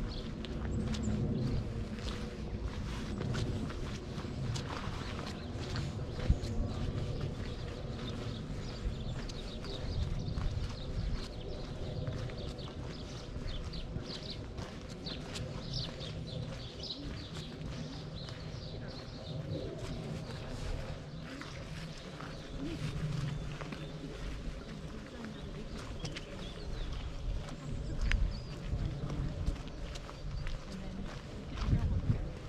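Footsteps walking at a steady pace on a dirt path, over a low rumble, with faint bird chirps now and then.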